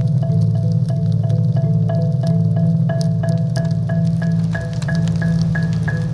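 Background music: short, bell-like mallet-percussion notes repeating in a steady pattern over a low sustained drone.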